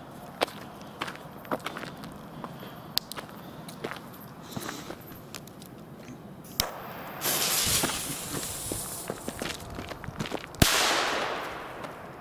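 Nico A-Böller firecracker: its fuse fizzes for about two seconds, then the cracker goes off with one sharp bang that echoes away over about a second. Footsteps and small clicks come before it.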